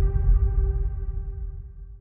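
The tail of a cinematic trailer hit: a deep rumble with a steady ringing tone held over it, both dying away to almost nothing by the end.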